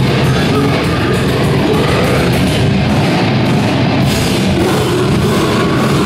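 Live heavy rock band playing loud, with distorted electric guitars and a drum kit, dense and steady throughout.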